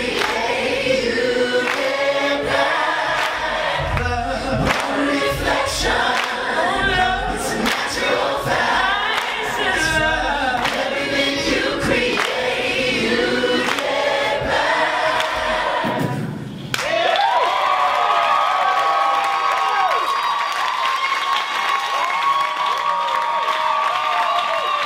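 Live a cappella singing built from layered vocal loops: several voices over a repeating low beat. About 16 seconds in, the beat stops and the voices hold one long sustained chord.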